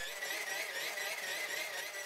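Hand-cranked geared DC motor working as a generator, spun fast through its 1:50 gearbox, whirring steadily with a thin, even whine.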